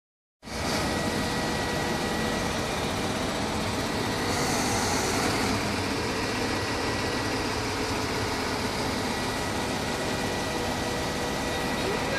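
Diesel engine of a Zoomlion QY25V532 25-tonne truck crane running steadily, with its telescopic boom raised and extended, and a faint steady high whine over it.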